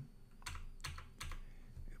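Computer keyboard keystrokes: about half a dozen separate taps spread over two seconds.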